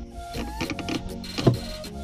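Background music with steady held tones, with a few light clicks and one sharp knock about one and a half seconds in: golf balls clacking as they are picked out of a golf cart's plastic dashboard tray.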